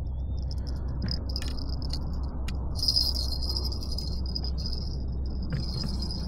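Small jingle bell clipped to a fishing rod jingling on and off, loudest about three seconds in: a fish tugging at the bait is setting off the bite alarm.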